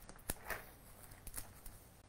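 Hand pruners snipping through soft petunia stems while a hanging basket is cut back hard: a few faint, short clicks spread through the two seconds.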